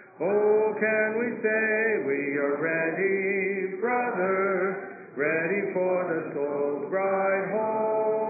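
A male song leader and a congregation singing a hymn a cappella in slow sung phrases, with short breaks between lines at the start and about five seconds in.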